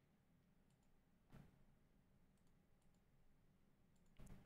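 Near silence: quiet room tone with a low hum, broken by one faint click about a second and a half in and a few fainter ticks.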